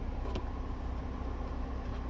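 Steady low hum inside the cabin of a Toyota Veloz idling, with the air of the roof-mounted rear air-conditioning blower running; a faint click about a third of a second in.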